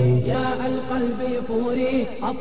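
Arabic vocal chant (a nasheed) with long held notes.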